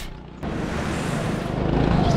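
Go-kart driving on track, heard from the kart itself: the running kart with road and wind rumble on the microphone. It starts abruptly about half a second in and grows a little louder.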